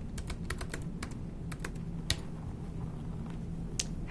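Typing on a computer keyboard: a quick run of key clicks in the first second, then scattered single keystrokes, as a short file name is typed. A low steady hum lies underneath.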